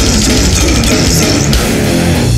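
Brutal death metal: heavily distorted guitars and bass over fast, dense drumming, loud and unbroken.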